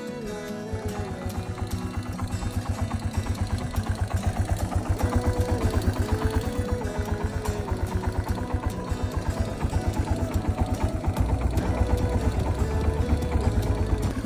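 A farm motorbike's engine running with a fast, even low beat that comes in just under a second in and grows louder near the end, under background music.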